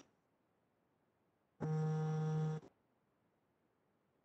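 A short click, then an electronic buzzing tone that holds steady for about a second and cuts off abruptly.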